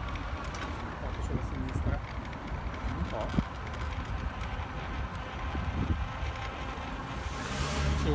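Low wind rumble on the microphone and road noise from riding an electric bike-share bike along an asphalt cycle path, with scattered light clicks and a louder hiss of wind near the end.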